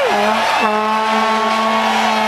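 A horn blown in a cheering crowd: its pitch slides down, bends up and back about half a second in, then holds one steady low note. Other horns drone at higher pitches underneath.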